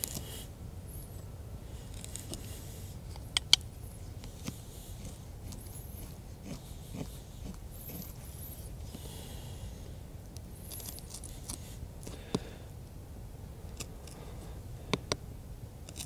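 A small D2 steel skeleton knife carving a notch into a wooden stick: faint, intermittent scraping cuts through the wood, with a few sharp clicks between them.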